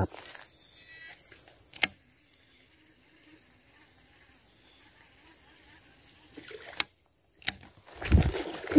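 Baitcasting reel during a cast: the spool rattles as it pays out line for about two seconds and is cut off by a sharp click. A faint steady high insect drone follows, with two more sharp clicks near the end.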